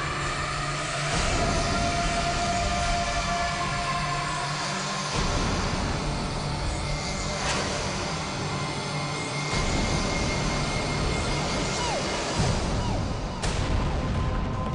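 Dramatic background music score with a low rumbling drone that swells and drops every few seconds, and a couple of sudden sweeping hits.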